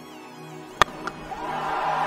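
A cricket bat strikes a cricket ball with one sharp crack a little under a second in, over soft background music. Crowd noise then swells as the ball is hit away.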